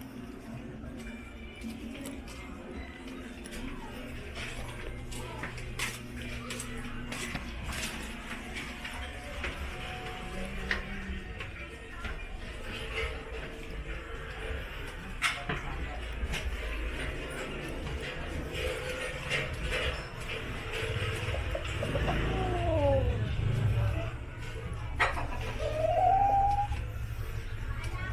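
Busy alley ambience: music playing from somewhere nearby, scattered voices and sharp knocks and clatters. A low rumble swells about three-quarters of the way through.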